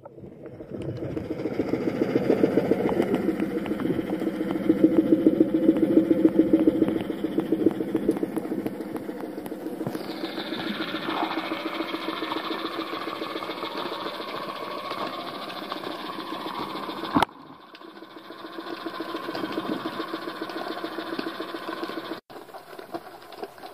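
Boat engine running, heard underwater: a steady, pulsing drone, joined by a higher whine about halfway through. A sharp click comes near the three-quarter mark, and the sound dips briefly before building again.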